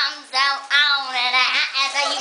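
A young woman singing in a helium-altered voice, thin and high like a child's, in short sung phrases.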